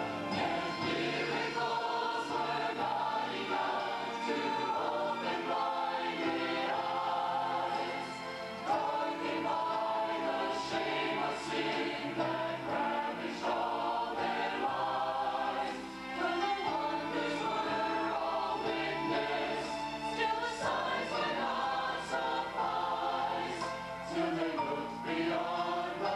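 Mixed choir of men's and women's voices singing a passage of an Easter cantata in long held chords that move from note to note.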